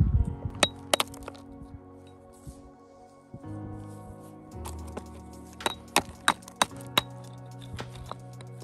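Geologist's rock hammer striking a piece of sedimentary rock to split it. Sharp cracks: two within the first second, then after a pause a quick run of about five blows, over background music.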